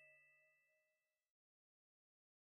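Near silence: the faint ringing tail of a chime from the closing jingle fades, then cuts off to dead silence just over a second in.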